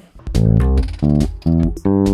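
Electric bass guitar played by hand, a short riff of about four plucked notes, the first starting about a third of a second in.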